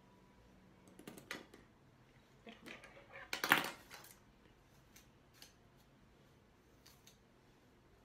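Scissors snipping through sections of long hair: a few soft clicks, then one louder, longer cut about three and a half seconds in, followed by a few faint clicks.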